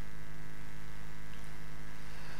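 Steady electrical mains hum with a buzz of overtones, unchanging throughout.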